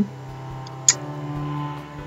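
Low steady hum with a single sharp click about a second in, from cardboard and paper being handled on a desk.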